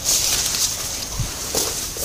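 Leaves and undergrowth rustling and scraping close to the microphone as someone pushes through dense bushes, over a steady high hiss.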